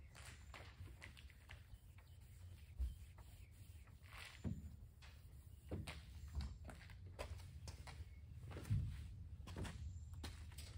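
Microfiber towel being wiped by hand over car paint, faint rubbing strokes with a few soft thumps in between. Footsteps come near the end.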